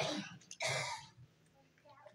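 A short throat-clear, about half a second in, lasting under half a second, followed by quiet.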